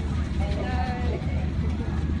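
A steady low rumble of outdoor background noise, with a voice talking faintly in the background.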